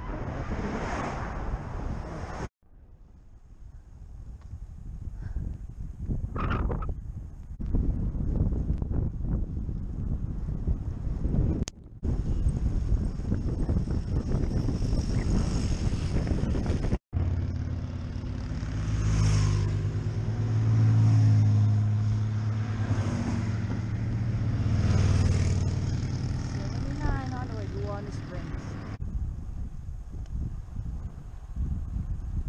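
Wind rushing over a bicycle-mounted camera's microphone with road noise and passing cars, broken by several abrupt cuts. In the second half a deep engine hum swells and fades a few times as heavy vehicles go by close to the bike.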